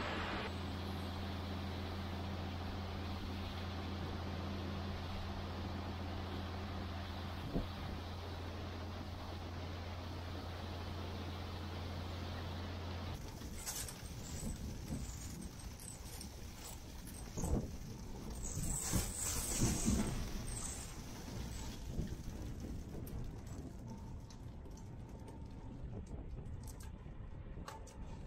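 A steady low machine hum from the parked, loaded grain truck at the bins stops suddenly about halfway. It gives way to wind buffeting and road noise from the empty hopper trailer travelling, with scattered knocks and rattles and a few louder gusts.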